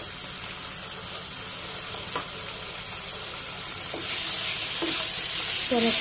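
Bell peppers and onion sizzling in hot oil in a frying pan while tomato sauce is stirred in with a wooden spatula. The sizzle grows louder about four seconds in.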